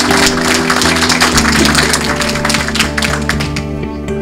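An audience applauding over closing music; the clapping thins out and dies away in the last second, leaving the music alone.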